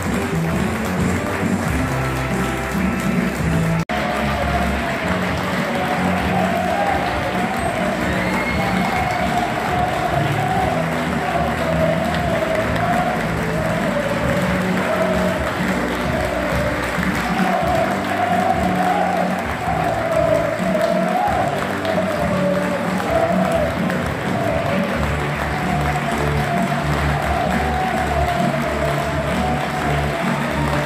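A small stadium crowd applauding, with music playing throughout.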